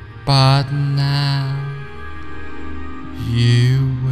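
Slow ambient meditation background music: a steady low drone under long held tones with a wavering pitch, one just after the start that breaks briefly and resumes, and another about three seconds in.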